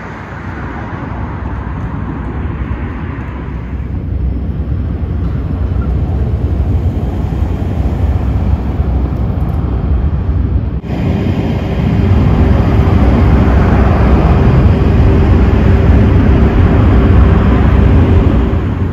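Steady rumble of city road traffic, growing louder over the first seconds. About eleven seconds in it changes abruptly and becomes louder, with a steady hum running under it.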